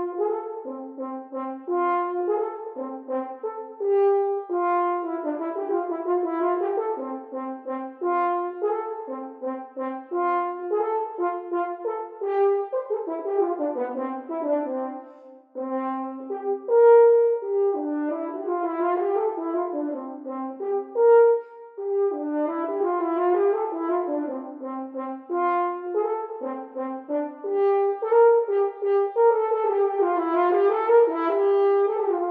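Solo French horn playing a playful, syncopated étude variation of mostly short, detached eighth notes with accented offbeats. There is a brief break about halfway through before the line carries on.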